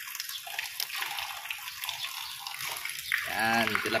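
Running water splashing steadily in a shallow concrete fish pond.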